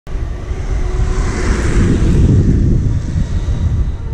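Wind buffeting the microphone of a camera moving along at riding speed, a loud, gusting low rumble with a hiss above it.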